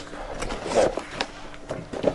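Cardboard pizza boxes being handled and opened, giving a few sharp clicks and a brief scrape of cardboard.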